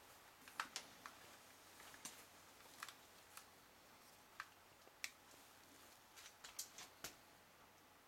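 Near silence: faint room hiss with a scattering of short, faint clicks at irregular intervals.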